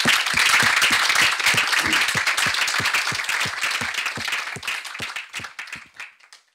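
Audience applauding, a dense patter of many hands clapping that thins to a few scattered claps near the end.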